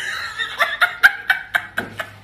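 A man laughing: a quick run of short laugh pulses, about four a second.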